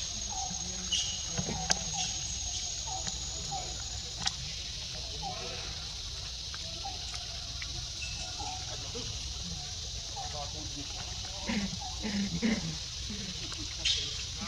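Outdoor forest ambience: a steady high-pitched insect drone, with one held high tone that stops about four seconds in. Short chirping calls are scattered throughout, and a few louder low sounds come a little before the end.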